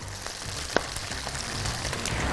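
Food frying in hot oil in a pot: a steady sizzling hiss, with one light click about three-quarters of a second in.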